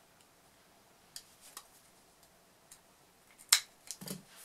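A few faint, scattered clicks and taps from hands handling craft materials, with one sharper, louder click about three and a half seconds in.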